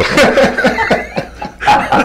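Men laughing into studio microphones in short bursts, dying down near the end.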